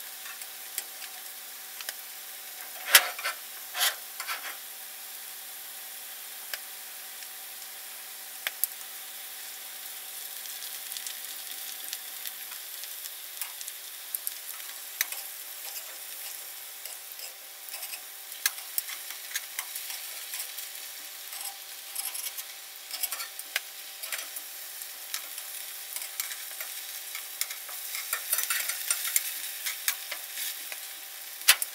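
Potatoes sizzling in hot oil in a cast iron skillet, with metal tongs clicking and scraping against the iron as the pieces are turned. The loudest clack comes about three seconds in, and the clicks come more often in the second half as he turns more pieces.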